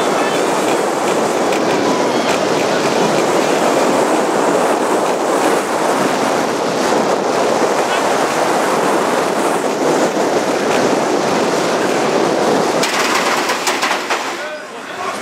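Onboard sound of the Olympia Looping steel roller coaster at speed: a steady loud rush of wind and wheels running on the steel track. Near the end the sound changes as the train runs into the station.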